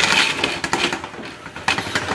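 Roll-up tambour shutter of a cabinet being pushed open by hand, its slats clicking and rattling quickly as they roll up into the housing.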